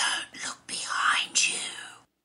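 A voice whispering in three short breathy phrases, with no words clear, fading out at the end.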